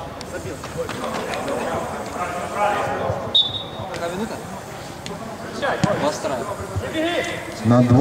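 Football being kicked on artificial turf, a few short thuds, with players' voices calling out around it.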